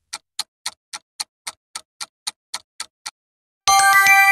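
Countdown clock ticking sound effect, about four ticks a second, stopping about three seconds in; a bright chime starts near the end.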